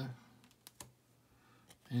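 A few light, sharp clicks as trading cards are slid and flipped in the hand, one card moved off the front of the stack.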